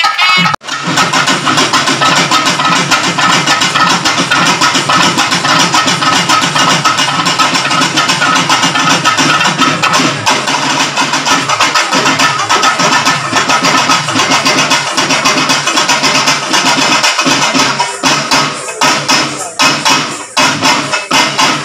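Folk percussion ensemble of barrel drums and frame drums playing a loud, fast, continuous rhythm. It breaks off for an instant about half a second in, and near the end the beats become more spaced out and separate.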